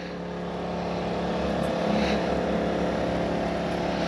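Small portable generator running steadily, a constant engine hum that grows slightly louder over the first couple of seconds.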